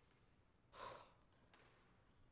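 A single short, soft sigh, a man's breath out, about a second in, amid near silence.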